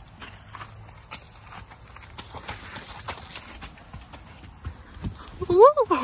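A draft-cross horse's hooves knocking and thudding in a few irregular steps as it hops up out of a shallow creek onto the muddy bank. A woman's voice exclaims near the end.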